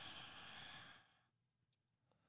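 A faint, breathy sigh from a person, fading out about a second in, followed by near silence.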